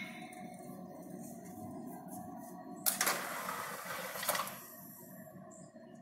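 Steady hum of a mechanical punch press running with its motor on and flywheel turning. About three seconds in, a burst of rushing noise lasts just over a second.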